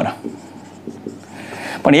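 Marker pen writing on a whiteboard: a soft scratching of the felt tip, growing a little louder toward the end as a word is written.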